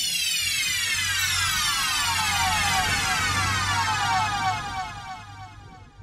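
Electronic sound-effect sample playing back in FL Studio: a dense stack of tones sliding steadily down in pitch for about five seconds, fading out near the end.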